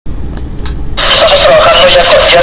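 A low rumble, then speech from a recorded AM radio news broadcast beginning about a second in.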